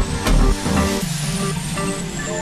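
Background electronic dance music: a steady beat cuts out about half a second in, leaving held synth notes and a high sweep that falls slowly.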